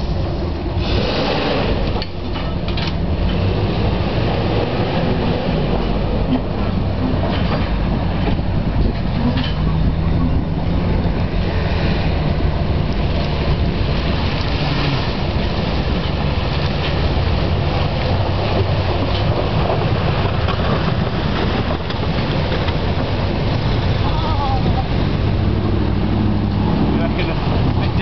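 Simca Marmon SUMB military truck's 4.2-litre V8 engine running under load as the truck drives through deep mud and water, its engine speed rising and falling.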